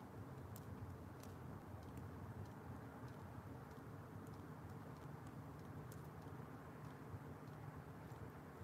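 Wood fire in a steel burn barrel crackling faintly, with scattered sharp pops at irregular intervals over a low steady rumble.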